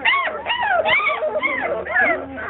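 Four-week-old basset hound puppies whining and yelping, a quick series of high cries that rise and fall in pitch, about four a second.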